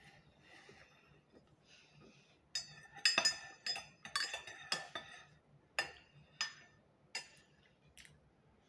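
A metal spoon stirring in a ceramic mug, clinking against its sides about ten times in quick, irregular strokes, starting a couple of seconds in.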